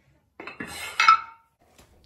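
Cast iron weight plate dropped onto a steel loading pin: a short scrape, then a metallic clank about a second in as it lands on the plate below, ringing briefly.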